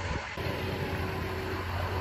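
Self-propelled crop sprayer's engine idling, a steady low hum.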